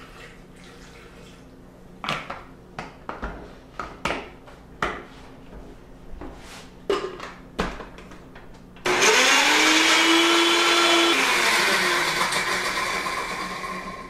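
Countertop blender starting suddenly about nine seconds in and running for about three seconds on a base of banana, ginger and apple juice, then slowing and dying away near the end. Before it, a few scattered knocks and clicks from handling the jar and bottle.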